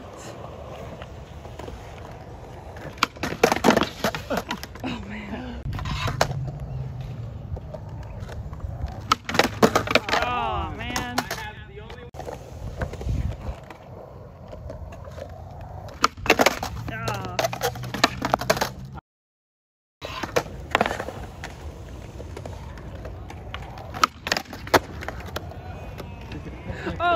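Skateboard wheels rolling on smooth concrete, broken by a string of sharp clacks and slaps of the board against the ground as tricks are tried and landed.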